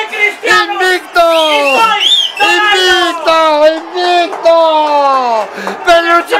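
A person yelling in a run of long, loud cries, each falling in pitch, celebrating a goal.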